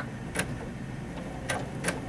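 Baby Lock Crescendo computerized sewing machine stitching a long basting stitch, with a steady motor hum and three sharp clicks from the needle mechanism.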